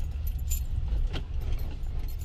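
Steady low rumble of a moving car heard from inside the cabin, with a few light clicks and rattles.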